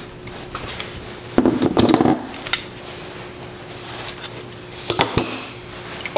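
Metal tools and parts clinking and clattering on a workbench: an adjustable wrench being set down while a brass fitting and the temperature-switch sensor are handled. There is a cluster of clinks about a second and a half in, and a short ringing clink near the end.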